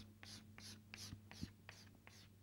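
Chalk on a blackboard: a quick run of short, faint scratching strokes, about four a second, as short vertical lines are drawn one after another.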